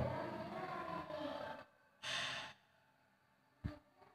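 A short breathy hiss, like a person's exhale or sigh, about two seconds in, and a single soft knock near the end; the rest is faint room noise.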